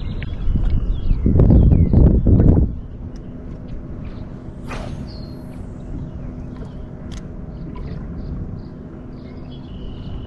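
Wind buffeting the microphone in a loud low rumble for about two seconds near the start. After that comes steady low wind and water noise with a faint steady hum, broken by a single brief high chirp about five seconds in.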